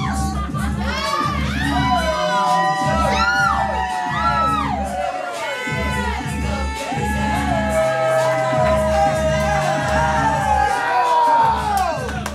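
Dance music with a heavy bass beat plays while a crowd cheers, yells and whoops over it.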